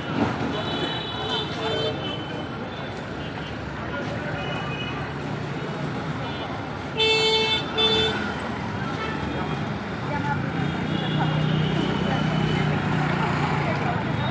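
Busy street traffic noise with voices, and vehicle horns honking: two short loud toots about seven seconds in, with fainter honks near the start.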